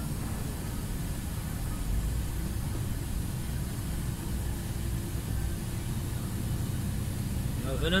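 Steady low rumble of a lorry's diesel engine and tyres, heard inside the cab while cruising slowly at about 40–50 km/h, with a faint steady hum.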